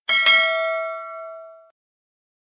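Bright bell-like ding sound effect, the notification-bell chime of a subscribe animation: struck once and again a moment later, then ringing out and fading away within about a second and a half.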